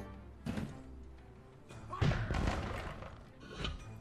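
Online slot game audio: game music with thudding sound effects as new symbols drop into the reels. There are three thuds, the loudest about two seconds in.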